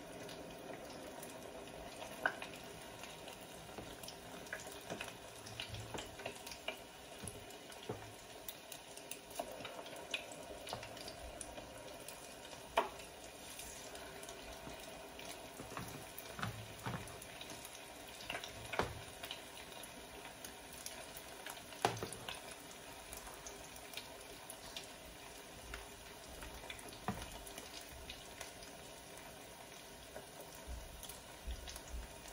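Fish-ball paste cooking in a pot on the stove, a steady hiss with crackles, while a spoon scrapes and clinks as more paste is scooped from the container and dropped in. Sharp clinks stand out a few times over the hiss.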